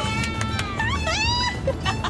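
Two women squealing with glee: a held high-pitched shriek, then several rising squeals about a second in, over background music.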